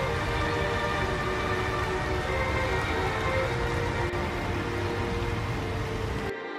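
Steady rain falling, an even rush of noise, with sustained background music playing over it.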